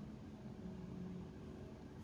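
Faint steady background hum and hiss, with no distinct events: low room tone.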